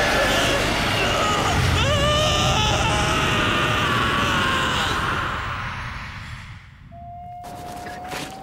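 A man's drawn-out scream, wavering in pitch, over loud noise, fading away between about five and seven seconds in. Near the end a single steady tone starts and holds.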